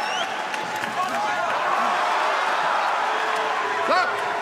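Arena crowd noise: a steady din of many voices with scattered shouts from the crowd.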